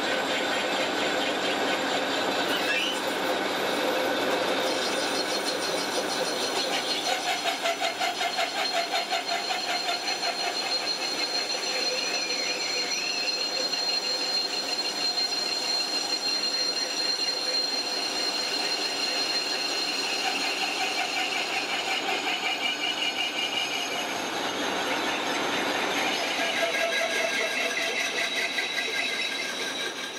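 Metal lathe turning cast-iron pipe pieces: the machine runs steadily while the cutting tool squeals with high held tones over the noise of the cut.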